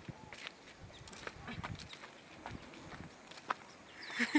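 Faint footsteps on a dirt road: a scattered, irregular series of soft steps and taps.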